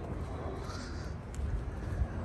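A bird calling briefly, a little over half a second in, over a steady low rumble.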